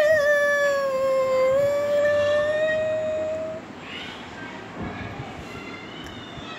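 A woman singing one long held note with a slight waver, sinking a little in pitch and rising again before it ends about three and a half seconds in.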